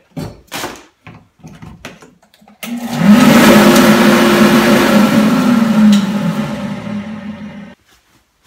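Grizzly G0710 1 HP wall-mount dust collector's blower switched on for a test run, unmounted with its inlet and outlet open: the motor spins up with a rising hum and a loud rush of air about two and a half seconds in, runs for a couple of seconds, then is switched off and winds down, stopping just before the end. A few short knocks from handling the cord come before it starts.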